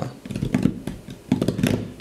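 Hands tapping and clattering on keyboard keys: an irregular run of soft clicks and knocks.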